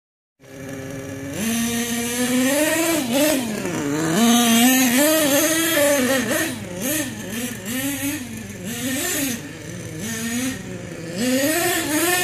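HPI Savage 25 RC monster truck's small two-stroke nitro engine, idling for about a second, then revving up and down over and over as the truck is driven, the pitch rising and falling with each burst of throttle.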